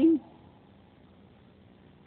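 The last syllable of a man's speaking voice dies away just after the start, then near silence: faint room hiss.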